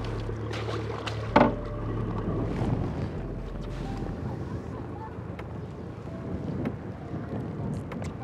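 Wind on the microphone and water moving around a small boat as a landing net is worked at its side, over a steady low hum, with one short knock about a second and a half in.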